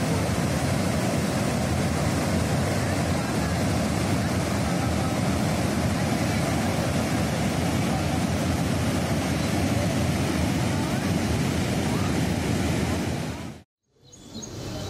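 Water rushing through the open spillway gates of Katepurna Dam and churning in the river below: a steady, loud rush from a large flood release. It cuts off suddenly near the end.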